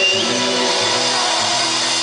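Live norteño band music: a button accordion holding sustained notes over electric bass and drums, played through the stage PA.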